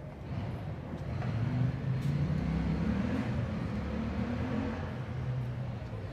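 A motor vehicle engine running with a low rumble, swelling up over the first second or so, holding steady, and easing off near the end.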